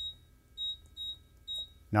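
ProtoTRAK RMX CNC control's keypad beeping: four short, high-pitched beeps about half a second apart. Each beep confirms a key press as numbers are typed in.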